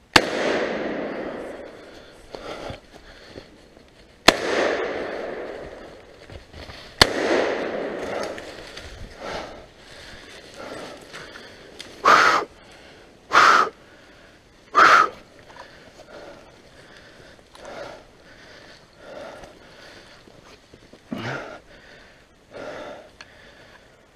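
Three gunshots fired at a wild boar, about four and then three seconds apart, each echoing through the woods. A few seconds later come three short, loud cries.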